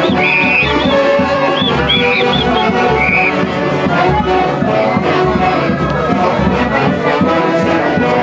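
Andean fiesta orchestra playing a huaylash tune: wind instruments lead over harp and a regular bass beat.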